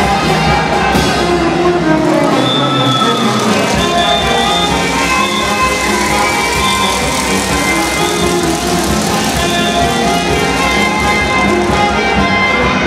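Marinera norteña music played by a brass band, with trumpets and other brass carrying the melody at a steady, loud level; the bass drops out briefly about two seconds in.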